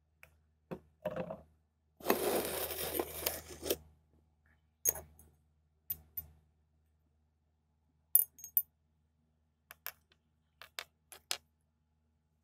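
Ammonium hydroxide being poured into a glass round-bottom flask for about two seconds, followed by a series of sharp clinks of glass against glass, several close together near the end.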